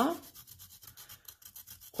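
Pencil lead rubbed in quick back-and-forth strokes on a sandpaper sharpening block, a soft, rapid, even scratching. It hones the pencil to a fine point.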